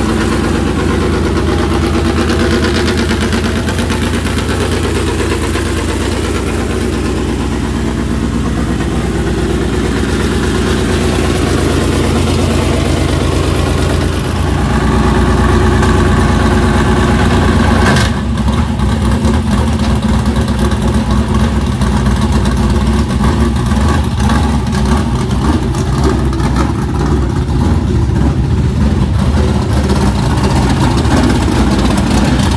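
A dirt late model race car's V8 engine, built by Wall-to-Wall Racing Engines, just fired up and idling. It gets a little louder about halfway through, and after a sudden change near the two-thirds mark the idle turns choppier and more pulsing.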